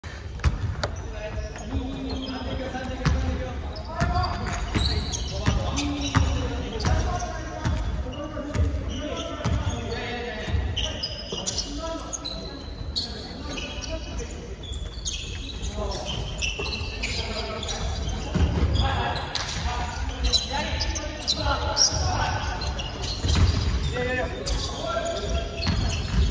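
Basketball game in a large gymnasium: a ball bouncing on the hardwood court with many sharp knocks, and players' voices calling out, all echoing in the hall.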